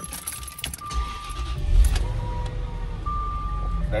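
Keys jingling at the ignition of a Jaguar XJR, then its V8 engine cranks and starts about a second in and settles into a steady idle, with several short electronic chime tones sounding over it as the ignition comes on.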